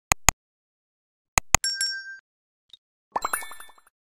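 Sound effects of an animated end card: two pairs of sharp clicks, a short ringing ding about one and a half seconds in, then a quick run of chiming notes near the end.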